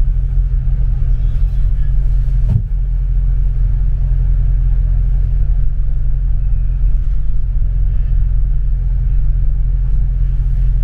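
Double-decker bus heard from inside on the upper deck: its engine and running gear make a steady low rumble, with a single sharp knock about two and a half seconds in.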